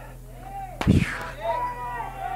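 A single loud thump about a second in, over faint voices in the background.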